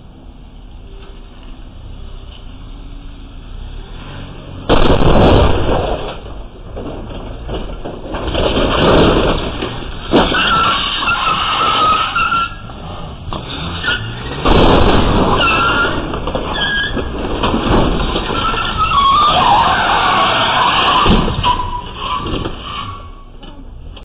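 An SUV crashing into a brick planter, with a sudden loud impact about five seconds in, followed by its engine revving hard and tyres squealing and scraping as the driver tries to pull away from the wreckage, with further loud jolts along the way.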